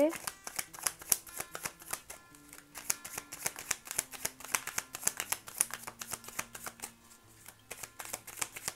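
A deck of tarot cards being shuffled by hand: a rapid, irregular run of light card snaps and slides that thins out briefly about two seconds in and again near the end.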